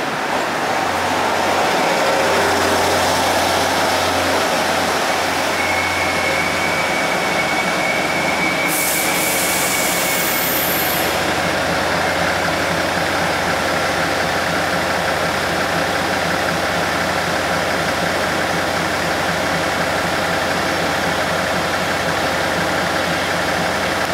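Taiwan Railways Tze-Chiang diesel multiple unit slowing to a stop at a platform, a thin steady squeal from about 6 to 10 s and a short hiss near 9 s, then its diesel engines idling with a steady low hum while it stands.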